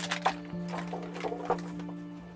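Crinkling and rustling of a foil packaging bag being torn open and handled, with a couple of sharper crackles, over background music with long held notes.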